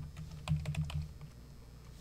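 Typing on a computer keyboard: a quick run of key clicks in the first second or so as a short word is typed.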